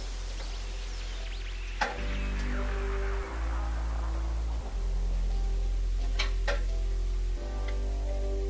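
Background music with sustained chords that change every second or two. A few light clicks sound over it, about two seconds in and twice near six seconds.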